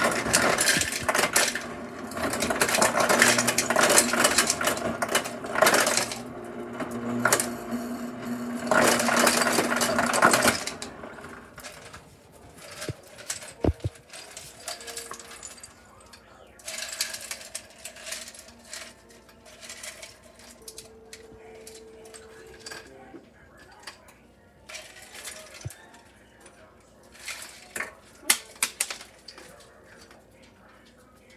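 Refrigerator door ice dispenser running for about ten seconds: a steady motor hum under a loud clatter of ice cubes dropping into a cup. After it stops, quieter scattered clinks of ice cubes being tipped and pushed onto a bowl of vegetables.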